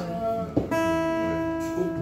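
Live acoustic guitar music. Under a second in, a single steady note starts and is held without wavering.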